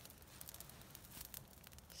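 Faint, scattered crackling of a small wood campfire, otherwise near silence.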